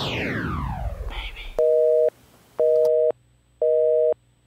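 Telephone busy signal: three short beeps of a steady two-note tone, about half a second on and half a second off, starting about a second and a half in. Before it, a falling sweep fades out.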